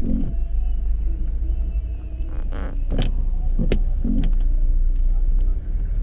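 Low, steady rumble of a motor vehicle's engine moving slowly. Brief voices of passers-by and a few sharp clicks are heard over it.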